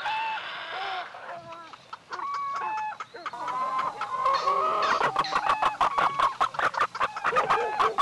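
Chickens clucking, a flock of short calls that grows busier and denser from about halfway in, heard as a recorded sound opening a track after a moment of silence.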